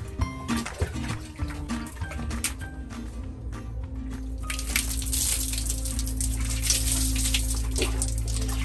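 Background music; from about halfway through, water poured by hand over a person's face, splashing and running down, under the music.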